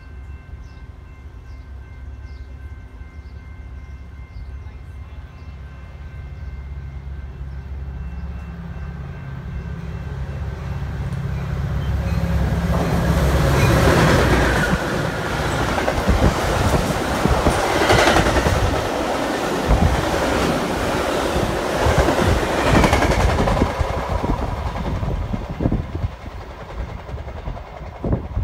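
A Metra commuter train passing at speed: the diesel locomotive's rumble grows as it approaches and is loudest as it goes by about 14 seconds in. The coaches then rush past with a rapid clickety-clack of wheels over the rail joints, fading near the end.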